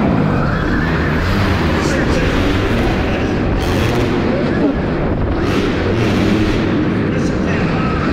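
Alta Redshift electric dirt bike racing around an indoor dirt track, heard from the rider's helmet camera: a steady wash of wind and track noise, with a faint motor whine rising and falling with the throttle.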